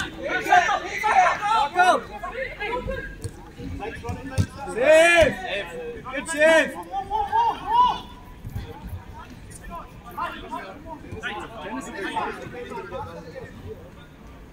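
Men shouting and calling to each other during a five-a-side football game. The loudest calls come about five and six and a half seconds in, and the voices get quieter after about eight seconds.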